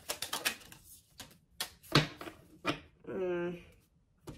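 Tarot cards being handled on a table: a quick run of crisp clicks and snaps at first, then scattered snaps, the sharpest about halfway. Near the end comes a short hummed "mm" from the reader.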